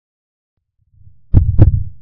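Heartbeat sound effect: silence, then a faint low rumble, then one double thump about a second and a half in, the second beat following the first a quarter second later.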